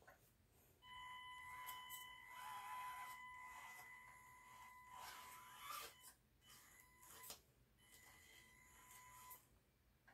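Faint, steady high-pitched electric whine from the Panda Hobby Tetra K1 micro RC crawler's motor and speed controller as it crawls slowly over a blanket. The whine starts about a second in, drops out briefly around the middle, comes back and stops just before the end, with a few light clicks in between.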